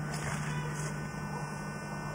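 Quiet background: a steady low hum under a faint even hiss, with no distinct event.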